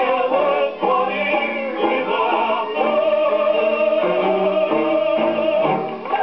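A 78 rpm Eclipse gramophone record playing a music-hall medley, with singing and band accompaniment in a narrow, old-recording sound. In the second half one note is held for about three seconds.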